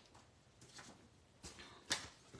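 Faint handling of a cardstock greeting card on a craft mat: a few soft taps and rustles, with one sharper tap just before the end.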